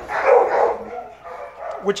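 Dog sounds: a short rough, noisy burst in the first half second or so, then quieter.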